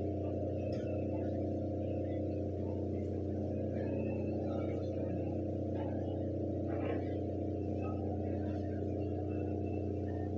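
Steady low hum made of several even tones, with faint scattered room noises above it.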